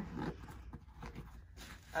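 Faint rustling and light, irregular clicks from a nylon roller bat bag being handled at its bottom compartment.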